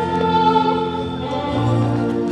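Choir singing a recessional hymn over held organ chords, with the notes changing about a second and a half in.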